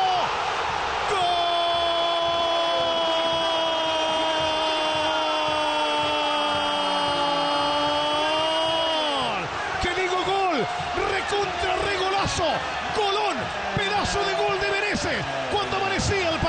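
Football commentator's long, held goal cry, one sustained shout of about eight seconds that sags in pitch and breaks off, over a cheering stadium crowd; excited shouting follows it.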